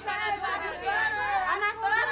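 Speech only: women's voices arguing.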